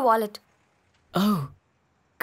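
Dubbed film dialogue: a voice trails off at the very start, then after a dead-silent gap there is one short voiced 'hm'-like vocal sound a little after a second in.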